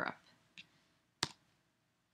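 A single sharp click about a second in, the click that advances the presentation to the next slide.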